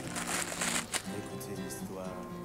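Thin plastic bag crinkling as a power cord is pulled out of it, mostly in the first second, over steady background music.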